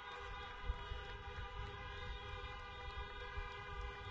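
Many car horns honking together in a steady chorus at several pitches, an audience applauding with horns, with gusts of wind rumbling on the microphone.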